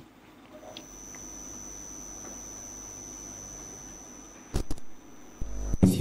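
Steady electrical hum with a thin, steady high-pitched whine over it, from the audio equipment. A sharp click comes about four and a half seconds in, and a low thud comes just before the end.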